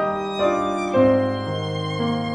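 Violin and piano playing a slow instrumental piece: the violin moves through three held notes, the loudest about a second in, over sustained piano chords.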